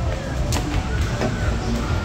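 Arcade din: a steady low rumble with faint background music, and one sharp knock about half a second in.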